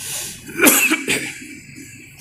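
A man coughing close to a microphone: a short, loud burst a little over half a second in.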